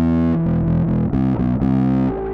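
Electric bass played through a switched-on Kokko FOD3 overdrive pedal, a Tube Screamer clone, giving a distorted tone. A quick riff of short notes, about three or four a second.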